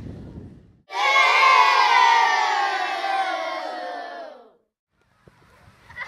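A crowd cheering, starting suddenly about a second in and fading out about three and a half seconds later.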